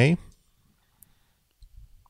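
A single faint computer mouse click about a second in, confirming a dialog box, then a faint low bump near the end.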